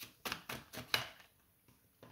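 A deck of tarot cards being shuffled by hand: a quick run of clicks in the first second or so.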